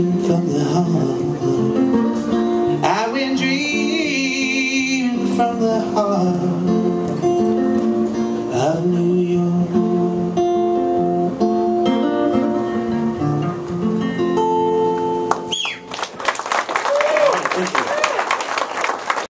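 Solo electric guitar playing the closing bars of a song, with held sung notes. The music ends about fifteen seconds in, and audience applause and cheering take over.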